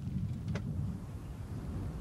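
Dried horse and sheep dung burning in open flames: a steady low rumble with a couple of faint crackles.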